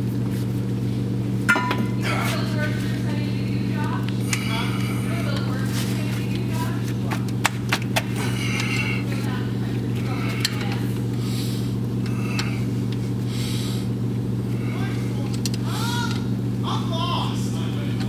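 A steady low hum runs throughout under faint, indistinct voices. A few sharp metallic clicks and taps come from hand work on the rear axle hub's bolts and retainer plate.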